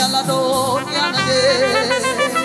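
Live gospel worship music: a lead vocal line with wide vibrato, sung without clear words, over sustained band accompaniment.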